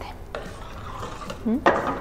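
A spoon stirring salsa in a stainless steel pot on the stove, scraping and tapping against the pot. There is a light click about a third of a second in and a louder scrape just before the end.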